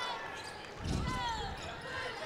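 Basketball being dribbled on a hardwood court, with a few bounces and a short falling squeak about a second in, over the murmur of the arena.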